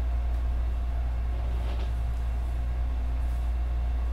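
A steady low hum of room noise with a thin steady tone above it, and no speech.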